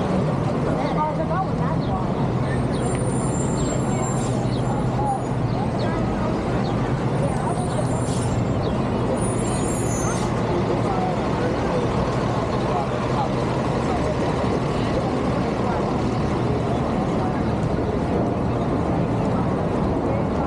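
Busy city intersection traffic: a steady engine rumble from idling and passing vehicles, including large trucks, with people talking nearby. A few brief high squeals in the first half.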